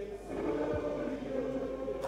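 A group of voices singing together like a choir, with long held notes.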